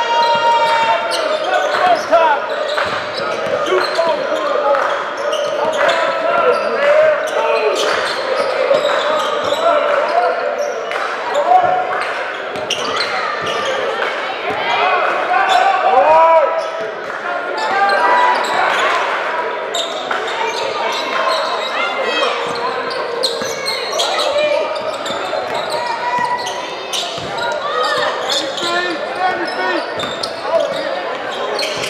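Indistinct voices of spectators and players echoing in a gymnasium during a basketball game, with a basketball bouncing on the court and other short sharp knocks throughout.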